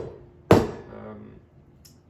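Espresso portafilter rapped against a knock box to empty the spent coffee puck: a sharp knock about half a second in that rings off over about a second, following the tail of a first knock, with a faint click near the end.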